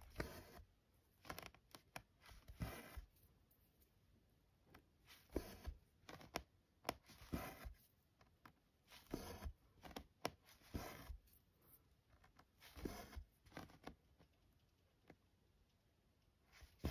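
Two strands of cotton embroidery floss being pulled through 14-count Aida cloth with a tapestry needle: a quiet rasping swish with each stitch, about ten of them, one every second or two.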